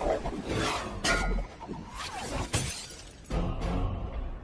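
Dramatic film score with a series of loud crashes, about four, each followed by a short ringing tail.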